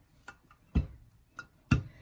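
Two dull knocks about a second apart, with a few fainter ticks, as a small iron is pressed down and shifted on the ironing surface.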